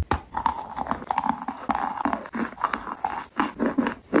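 Close-miked chewing of a mouthful of a coconut-flake-coated snack: irregular crunches and wet mouth clicks, with a sharp crunch just at the start.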